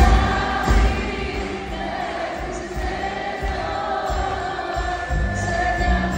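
Live Greek popular music from a band with bouzouki and guitars and a low beat, with many voices singing the melody together.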